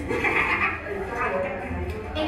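Women's voices from a film soundtrack played over a screening room's speakers: a loud, high-pitched woman's shout at the start, then more agitated talk.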